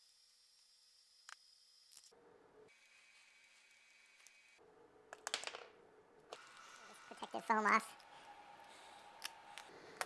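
Quiet hand-tool handling on a wooden workbench: a few faint clicks and taps of a screwdriver and small loose screws, after a near-silent first half. A brief vocal sound comes about seven and a half seconds in.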